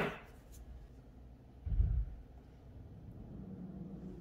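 Quiet room tone broken by one dull, deep thump about two seconds in, with a faint low hum near the end.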